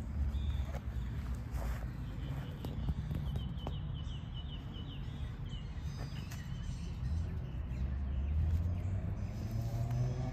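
Outdoor woodland ambience: a steady low rumble on the microphone, with a bird's quick run of high chirps about three to four seconds in and a few faint clicks.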